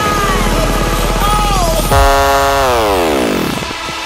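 Electronic dance music from a live DJ mix, with a pulsing beat and gliding melodic lines. About two seconds in, the bass and beat drop out, and a held buzzy synth chord slides steadily down in pitch over about a second and a half.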